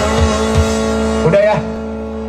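Live rock band with drums and electric guitars playing, then cutting back a little over a second in to a held chord that keeps ringing, with a short call from a voice as the full band stops.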